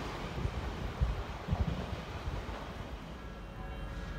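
Odakyu 30000 series EXE train running through the station: a low rumble with a few wheel knocks, about a second and a second and a half in, dying away over the last second.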